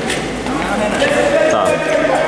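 Indistinct voices on a futsal court, with a few sharp knocks near the end.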